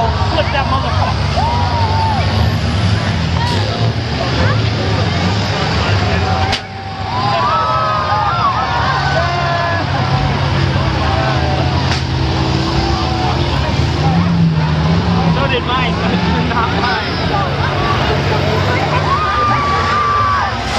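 Several school bus engines running together in a demolition derby arena, a steady low drone under a dense rumble, with occasional sharp knocks from the buses hitting each other. People's voices and shouts sound over the engines.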